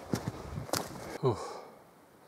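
A hiker's footsteps on a dirt forest track, a few sharp steps in the first second and a half, with a brief 'ooh' from the walker; it goes quiet near the end.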